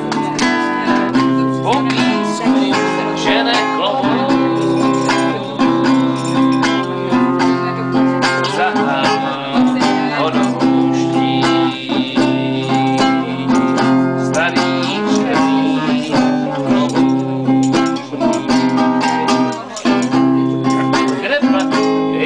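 A man singing while strumming chords on an acoustic guitar.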